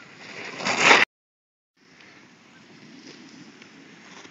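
Snowboard sliding and scraping over packed snow, growing louder as the rider passes close, then cut off suddenly about a second in. After a short gap of silence, a fainter steady rushing noise continues.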